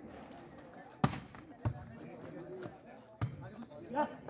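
A volleyball being struck by players' hands during a rally: a few sharp slaps, the loudest about a second in, with players and spectators calling out underneath.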